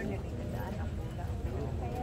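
Indistinct chatter of several people talking in the background, over a steady low rumble.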